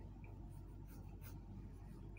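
Quiet room tone with a steady low hum and a few faint, brief ticks in the first half.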